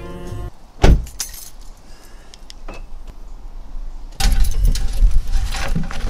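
Car radio music cuts off half a second in, followed by a single loud thump of a car door shutting. Light clicks and key jingles follow, then from about four seconds in louder rustling and knocks as a metal mailbox is opened near the end.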